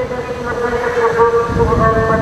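Train horn held as one long, steady chord, with low rumbling from the train in the second half.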